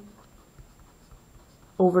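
Pencil writing numbers on paper, a faint scratching.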